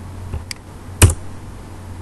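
A few computer keyboard key presses: two light clicks, then a sharp, much louder key strike about a second in, over a low steady hum.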